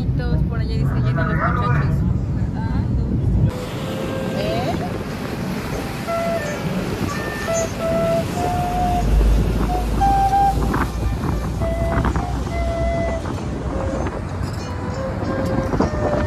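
Passenger ferry's engines rumbling under passenger chatter. About three and a half seconds in, the sound changes to wind buffeting the microphone as the ferry runs, with a simple tune of held notes over it.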